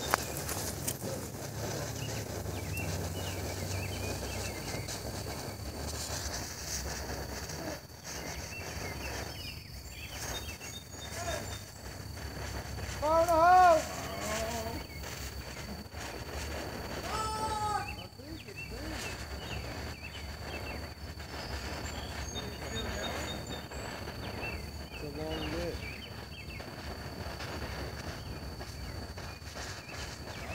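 Outdoor background with a faint steady high-pitched whine while a firework mortar fuse burns down. A short, loud, pitched call with a wavering pitch comes about 13 seconds in, with fainter ones later. No launch or explosion is heard.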